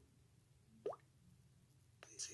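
Near silence with a faint low hum, broken just under a second in by one short plop that glides quickly upward in pitch.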